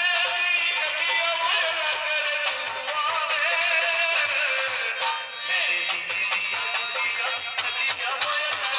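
Amplified Punjabi folk music: a man singing into a microphone, his melody wavering and ornamented, over a steady drum beat.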